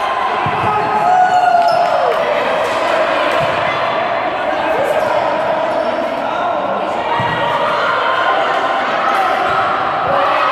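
Futsal being played on a hard indoor court: the ball knocked and bouncing a few times, with short shoe squeals. Under it runs the continuous din of players' and spectators' voices, echoing in a large hall.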